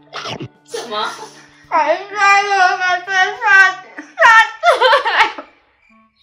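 A woman wailing and sobbing in drawn-out, wordless cries with her mouth full of cake, several cries in a row ending about five and a half seconds in, with soft music underneath.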